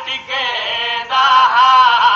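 A Saraiki noha, a Shia mourning lament, chanted in long sung phrases with a brief break about a second in. It comes from an old radio recording with a muffled top end.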